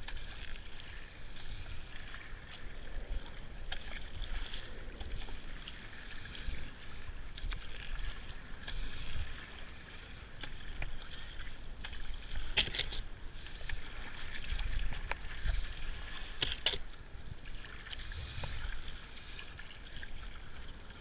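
Kayak paddle strokes in calm river water: the blades dip and splash and water washes along the hull, with two sharper splashes in the second half.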